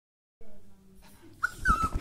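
A small dog whining: a short high whine about one and a half seconds in, then a longer one that falls slightly in pitch, over a few low thumps.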